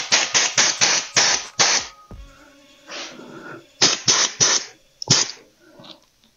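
Compressed air hissing out of the air-suspension bags in short, rapid bursts, about three or four a second, as the pressure is let down a little at a time. A second run of bursts comes after a pause about four seconds in.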